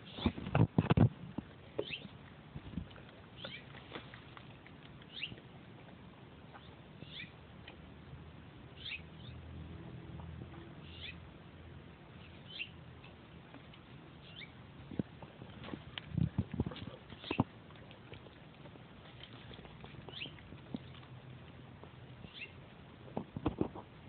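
Dog foraging in berry plants, nosing through the leaves and chewing berries off the stems: rustling, snuffling and mouth sounds in short uneven spells, loudest about a second in and again around two-thirds of the way through.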